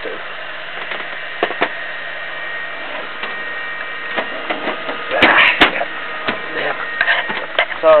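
Cooling fans and liquid-cooling pump of an overclocked desktop PC running with a steady whir and hum. A few light knocks and a louder rustle about five seconds in.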